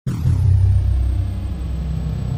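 Deep rumbling sound effect of an animated logo outro, starting suddenly out of silence and holding steady, with a faint high tone sliding down at its start.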